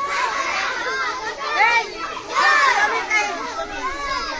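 Crowd of many children's voices shouting and calling out together, overlapping and swelling louder several times.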